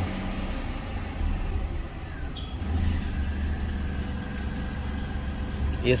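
Renault Kwid's freshly overhauled three-cylinder petrol engine idling quietly just after starting, heard from inside the cabin. A faint steady whine joins about three seconds in.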